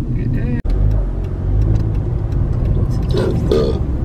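Steady low rumble of road and engine noise inside a moving car's cabin, with brief voices near the start and about three seconds in.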